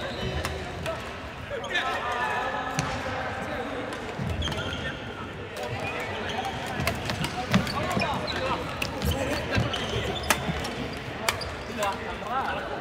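A badminton rally: sharp clicks of rackets striking the shuttlecock and footfalls thudding on the wooden court floor, in a large echoing sports hall. Players' voices call out about two seconds in and again at the end.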